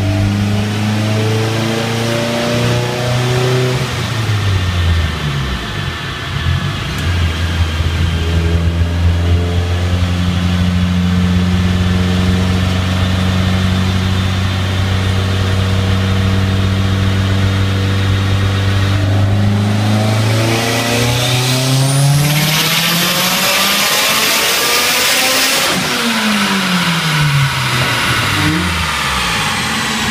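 Mitsubishi Lancer Evolution X's turbocharged 2.0-litre four-cylinder on E85 with a Precision 5858 turbo, run on a chassis dyno. It holds a steady speed for a long stretch, then from about twenty seconds in it makes a full pull: the engine note and a high turbo whine climb together for about five seconds before the throttle closes and the revs fall away.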